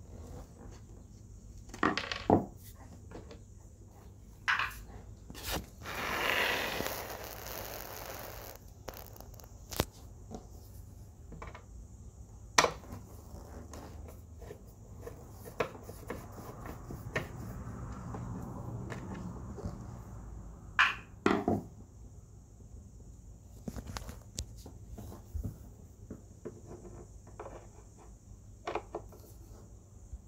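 Phillips screwdriver turning a countersunk screw out of a subwoofer's amplifier panel, with scattered clicks and scrapes from the bit working in the screw head. There is a longer scraping stretch about six seconds in, and a few sharp knocks near two, twelve and twenty-one seconds.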